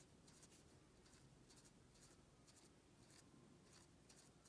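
Faint taps of a felt-tip marker dotting on paper, a series of small dabs about two or three a second.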